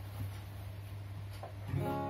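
Cutaway acoustic guitar: a chord is struck near the end and rings out with many sustained notes. Before it there is only a low steady hum with a few faint taps.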